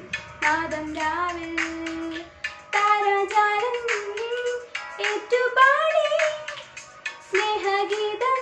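A girl singing a Christmas carol in phrases with short breaths between them, over a fainter instrumental backing track.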